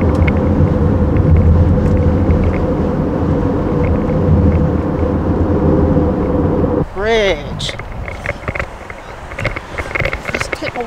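Steady road and engine noise inside a moving car's cabin, which cuts off abruptly about seven seconds in. A short voice sound and a quieter outdoor stretch with light clicks follow.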